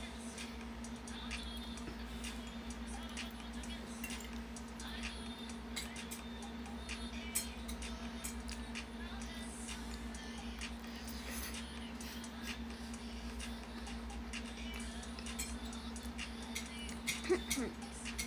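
Steady low electrical hum with scattered small clicks of a fork against a plate while someone eats, one sharper click about halfway through; a short vocal murmur near the end.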